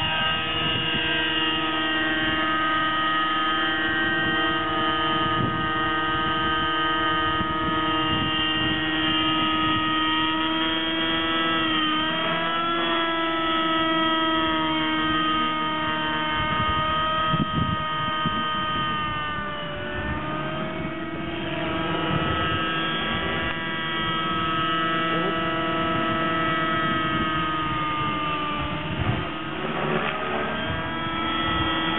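Nitro engine and rotor of an Align T-Rex 600 LE RC helicopter running at flying speed, a steady high-pitched whine from its two-stroke glow engine. The pitch sags briefly and recovers a few times: about twelve seconds in, around twenty seconds in, and just before the end.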